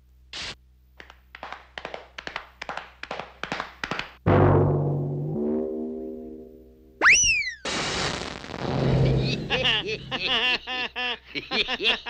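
A string of cartoon sound effects for a bull rampage: a quick run of knocks, a loud crash that rings into a twanging boing, a sharp falling whistle and another crash. Two characters laugh near the end.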